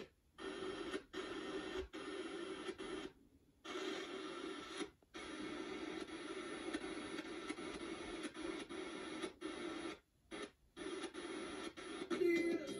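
Audio from a Quad FM3 FM tuner playing through small computer speakers as its tuning knob is turned across the band. The station sound breaks off into silence about four times as the muting cuts in between stations.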